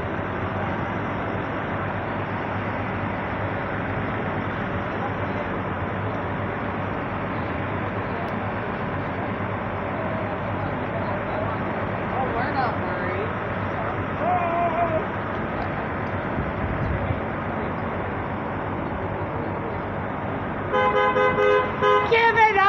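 Steady drone of idling engines and street traffic, then near the end a car horn sounds in one long, flat blast: a driver honking impatiently at a bus stopped to unload passengers.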